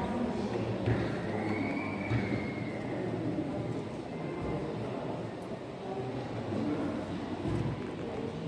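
Steady background noise of a large hall with faint, indistinct voices; a faint thin tone rises and falls around two seconds in.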